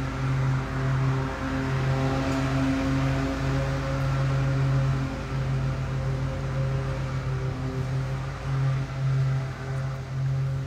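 A steady low drone at an unchanging pitch, with overtones above it. It swells and dips in strength every second or two.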